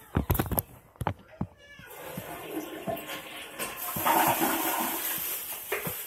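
Toilet flushing: a few sharp knocks and clicks, then rushing water that builds, peaks and dies away near the end.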